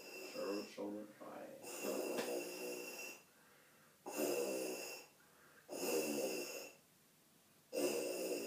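Tuba mouthpiece buzzing: a student buzzes his lips into the mouthpiece held in his hand, several buzzes of about a second each with short pauses between them, practising to play slower and lower.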